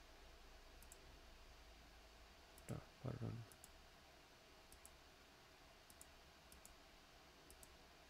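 Faint computer mouse clicks, single and in quick pairs, scattered over near-silent room tone. Two brief, soft low sounds come about three seconds in.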